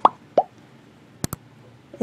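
Two short pop sound effects, the first falling in pitch, then a quick double mouse-click sound effect a little past a second in, from an animated subscribe-button graphic.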